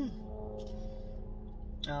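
A woman's voice: a drawn-out closed-mouth 'mmm' followed by a laugh near the end, over a steady low rumble inside a car.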